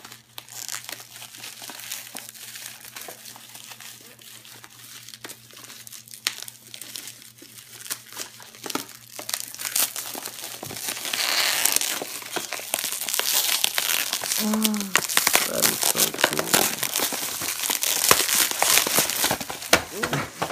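Plastic bubble wrap being pulled open and crumpled by hand: a continuous run of crinkling and crackling that gets much louder and denser about halfway through.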